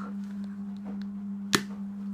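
A single sharp snap about one and a half seconds in as a bite of chocolate breaks off a chocolate bunny, over a steady low hum.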